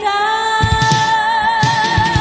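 1980s Japanese pop song: a long note held with vibrato, joined about half a second in by drums and bass.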